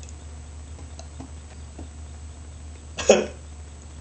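A man's single short cough about three seconds in, over a steady low hum.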